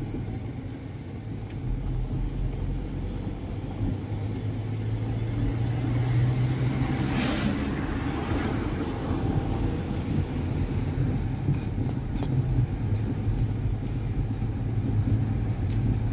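Car driving, heard from inside the cabin: a steady low engine and road rumble, with a louder rushing sound about seven seconds in.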